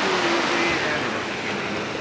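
Steady rush of a big whitewater rapid, water crashing over boulders, easing a little about halfway through.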